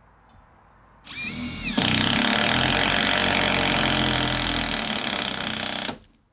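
Handheld power drill starting about a second in, its pitch rising as it spins up, then running steadily under load for about four seconds into the wooden framing before stopping abruptly.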